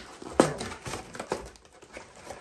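Cardboard Pop-Tarts box being opened by hand: one sharp snap of the flap about half a second in, then a few light clicks and rustles of the card.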